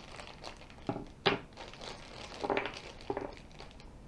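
Thin plastic packaging bag crinkling as it is cut open with scissors and handled, with one sharp snip a little over a second in.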